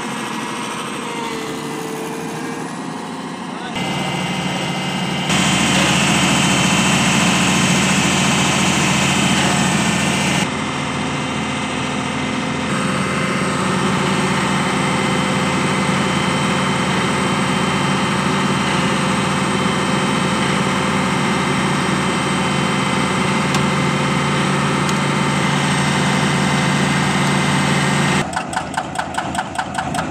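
Doosan tracked excavator's diesel engine running steadily, its level stepping up a few seconds in. Near the end a rapid, evenly spaced knocking takes over.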